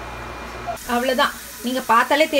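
Quiet room tone, then, about three-quarters of a second in, a person's voice speaking.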